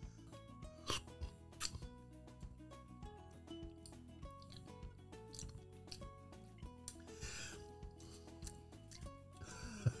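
Quiet background music with steady held notes, with a few soft clicks and brief hisses over it.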